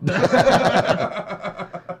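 Loud laughter from more than one person, a dense run of rapid laughing pulses that starts suddenly and lasts about two seconds.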